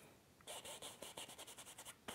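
Filbert brush bristles scrubbing paint onto a canvas in quick short strokes, a faint scratching that starts about half a second in.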